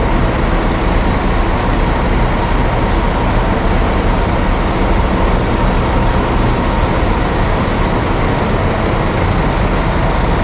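Idling coach engines, a steady low drone under a constant hiss.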